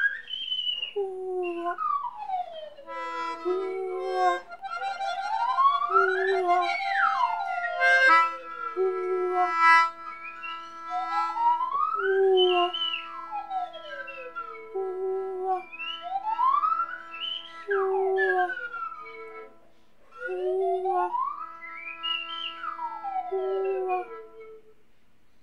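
Experimental wind-and-whistling trio: pitches slide up and then down in repeated arcs every few seconds, over long held notes from a wind instrument. The music briefly drops out just before the end.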